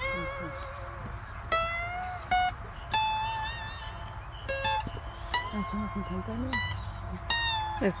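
Acoustic guitar picked slowly, a melody of single notes struck one at a time and left to ring, some with a wavering vibrato.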